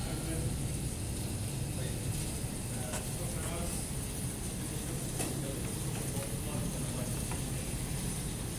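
Steady low hum and hiss of room background noise, with faint voices and a few light clicks.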